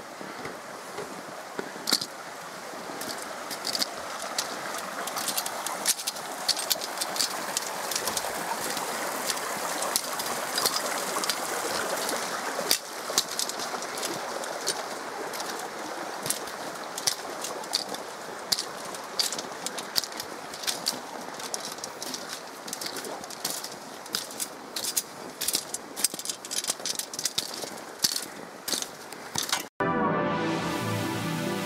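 Footsteps clicking irregularly on the metal treads of a wire-mesh swing bridge, over a steady rush of running water. The sound cuts off abruptly just before the end.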